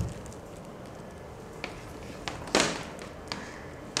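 Handling noise from a coiled ethernet patch cable: a few faint taps and one short brushing swish about two and a half seconds in, over quiet room tone.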